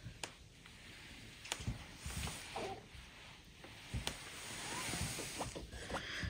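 Oliso clothes iron pressing a small cotton fabric heart: faint rubbing and sliding of the iron over the cloth, with a few soft clicks and knocks.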